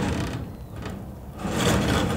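A large clam shell set down on a wire grill mesh and pushed across it, its shell scraping and rattling on the wires. There is a sudden burst at the start and a louder stretch near the end.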